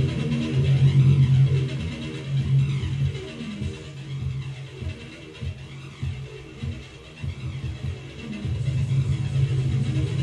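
Grind/death metal recording playing back, heavy in the bass. It turns quieter for a few seconds in the middle and builds up again near the end.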